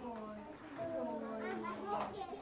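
Children's voices chattering faintly in the background, over a low steady hum.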